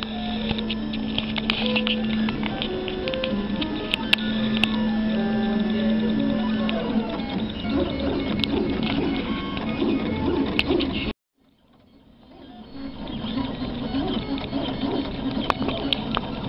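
A 3D printer at work: its stepper motors whine in held tones that jump from pitch to pitch as the print head changes speed and direction, with small ticks. The sound drops out suddenly about eleven seconds in and fades back in.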